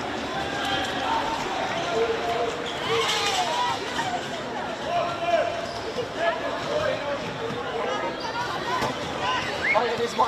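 Players shouting and calling to each other across an open-air football pitch during play, some calls long and drawn out, over the general noise of the ground.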